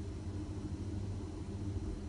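Steady low outdoor background rumble with a faint hum, nothing sudden in it.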